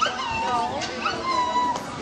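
High-pitched children's voices calling out and squealing, with one long held note about a second in.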